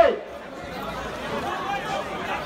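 Low chatter of several voices, after a held chanted voice breaks off with a falling slide at the very start.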